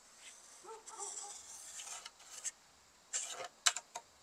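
Pencil scratching across a hollow wooden door's surface as it is swung around on a wooden trammel strip pivoting on a screw, drawing a semicircle. Faint at first, with a few short, louder scratchy strokes from about three seconds in.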